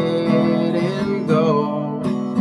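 Music: a country song with acoustic guitar strummed in a steady rhythm and a man's voice holding one long sung note over it.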